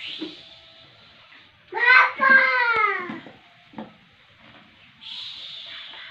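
A toddler's voice: one drawn-out, wordless call about two seconds in, lasting about a second and a half and falling in pitch.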